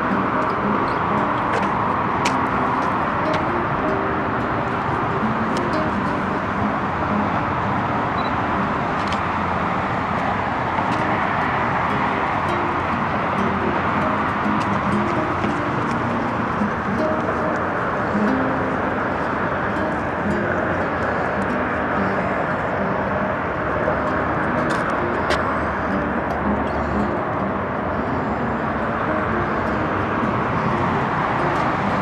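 Plucked acoustic guitar music over a steady hiss of road traffic.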